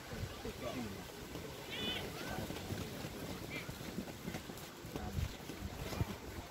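Faint distant voices of players and spectators calling out across an outdoor football pitch, a few short shouts over a steady low background rumble.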